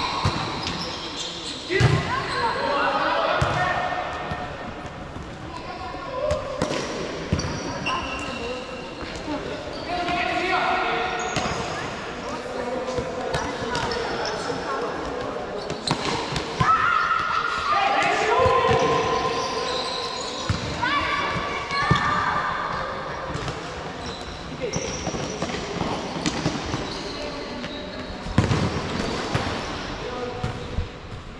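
Futsal players shouting and calling to each other across a large sports hall, with repeated thuds of the ball being kicked and bouncing on the court.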